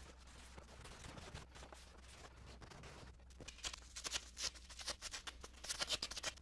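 Quiet room tone with a steady low hum. In the second half come a run of faint, irregular clicks and rustles of hands handling materials.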